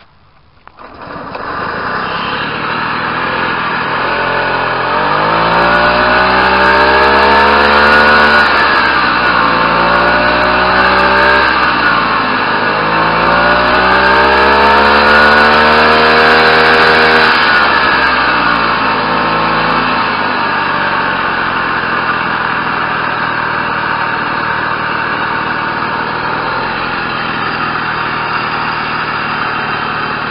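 Tomos moped's small two-stroke single-cylinder engine catches about a second in and idles, then is revved up twice, each time rising over a few seconds and falling back, the second to about 5,000 rpm, before settling to a steady idle.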